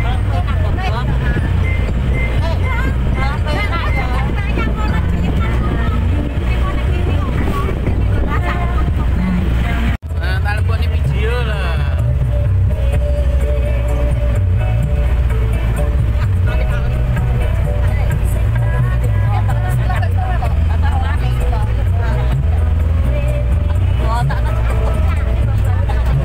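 Steady low engine rumble of a mini road train while moving, under loud music with a singer. The sound drops out for a moment about ten seconds in.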